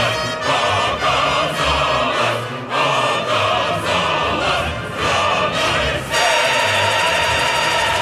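Opera chorus and orchestra performing a run of short, loud chords with the chorus singing, then holding one long chord from about six seconds in.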